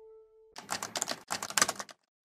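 A held note of the closing music fades out, then a rapid clatter of clicks like keyboard typing comes in two bursts of well under a second each, with a short gap between them: a sound effect laid under the animated end card.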